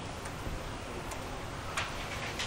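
Steady room noise with a few scattered, irregular light clicks.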